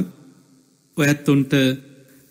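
A man's voice speaking: after a pause of about a second, one short spoken phrase.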